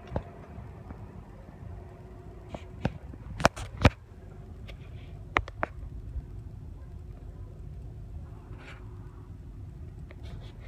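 Steady low hum inside a car cabin, broken by a handful of sharp clicks and knocks, the loudest between about two and a half and four seconds in and a couple more near six seconds.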